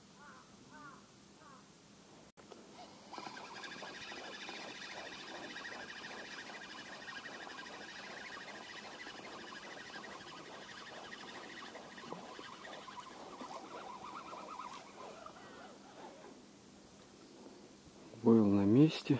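Spinning reel on a feeder rod being wound in, a steady geared whirr with a quick even ticking. It starts about three seconds in and fades out near the end as the feeder comes up out of the water.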